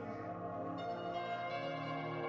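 Background music with sustained, ringing bell-like tones and held notes.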